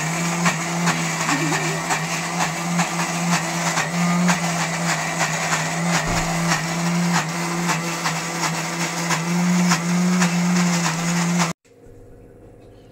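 Philips mixer grinder running steadily at speed, its motor humming as it grinds a masala of onion, cashews and whole spices in the steel jar; it stops suddenly near the end.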